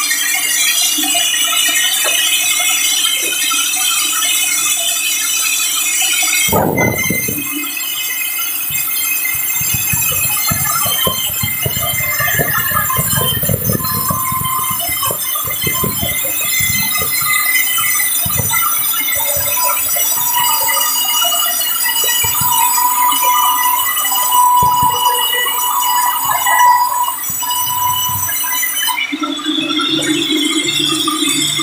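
A sawmill band saw cutting lengthwise through a large hardwood log, giving a loud, steady high-pitched whine of many ringing tones. A knock about six seconds in is followed by a spell of irregular low knocks and rattles.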